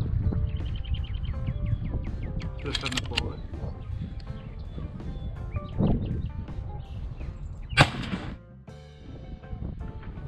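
A quick run of small clicks from a rifle scope's elevation turret being adjusted near the start, as the scope is lowered five clicks in zeroing. About eight seconds in comes a single sharp shot from the scoped bolt-action hunting rifle.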